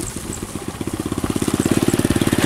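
A small motorcycle engine running with a fast, even putter that grows steadily louder.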